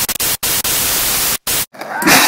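Loud, steady static hiss like a detuned TV, cut by three brief silent gaps: about half a second in, and twice near the end.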